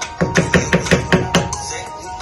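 A wooden spoon knocked rapidly against a speckled coated frying pan, about seven quick taps in just over a second, to shake off the sauce.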